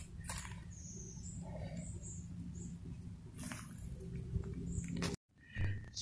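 Quiet woodland ambience: a low steady rumble with a few faint, short, high-pitched chirps and small rustling clicks. It drops out abruptly about five seconds in.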